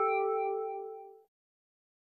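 The OneTrueMedia sound logo: a short bell-like electronic chime, a chord of a few ringing tones that fades away just over a second in.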